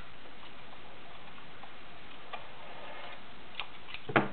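Kenmore model 1318 all-metal sewing machine running steadily, stitching fabric, with a faint mechanical ticking over its even whir.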